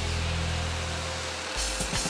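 Background music: a held low bass note under a steady thin tone, giving way about one and a half seconds in to a pulsing beat.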